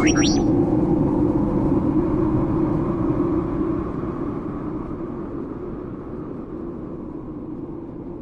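A low, steady synthesized rumble that fades slowly away. At the very start, a quick run of R2-D2-style electronic beeps and whistles ends within the first half second.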